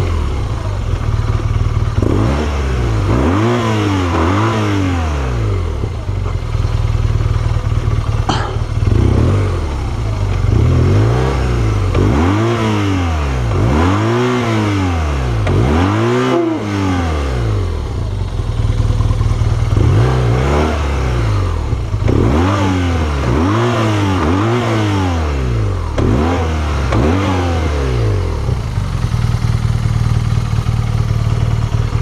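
BMW R1200GS boxer-twin engine idling and being revved up and back down in short repeated throttle blips, in runs of several blips a second or so apart, with steadier running at the start and end.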